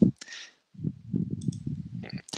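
A run of soft, irregular clicks from a computer mouse or keyboard as a presentation slide is advanced, starting about a second in.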